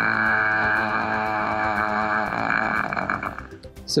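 A recorded sustained vowel 'ah' in a man's low voice, held at a steady pitch, then wavering and fading out a little after three seconds in.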